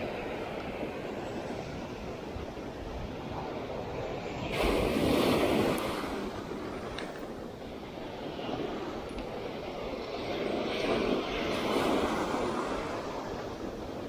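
Sea surf washing up the sand at the shoreline, a steady rush that swells louder twice as waves break and run in.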